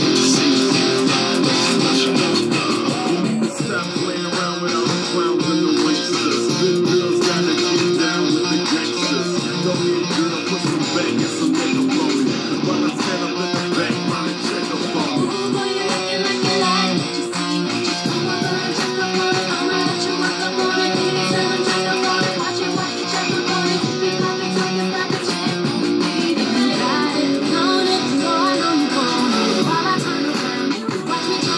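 Electric guitar played continuously in a heavy metal style, mixing chords and single-note lines.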